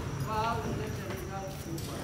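Basketball bouncing on an outdoor court, a series of dull thuds, under people's voices talking, with one voice clearly heard about half a second in.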